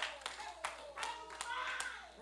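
Impassioned prayer spoken aloud in a church, broken by a few sharp hand claps from the congregation.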